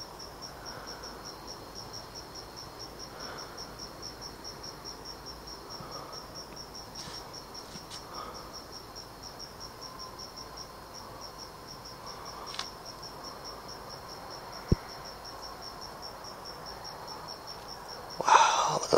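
A cricket chirping steadily in a high pulsing tone, about three chirps a second, with a fainter steady insect tone beneath it. A single sharp click is heard about three-quarters of the way through.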